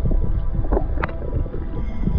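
Underwater sound through a GoPro's waterproof housing: a steady low watery rumble with faint steady hum tones, crossed by two short rising squeaks about a second in.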